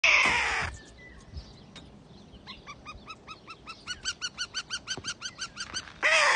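Harris's hawks calling: one harsh scream at the start, then from about two and a half seconds a run of quick, evenly spaced calls, about four a second, getting louder.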